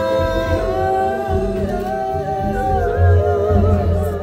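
A woman singing long, held wordless notes that slide gently between pitches, over a low bass accompaniment from a live band.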